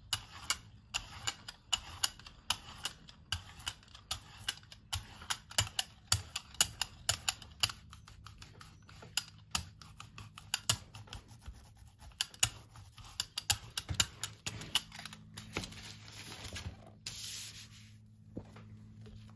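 A hand brayer rolling tacky acrylic paint back and forth over a gel printing plate, making a quick, irregular run of sharp sticky clicks. Near the end there is a short rustle as the paper laid on the plate is pressed by hand.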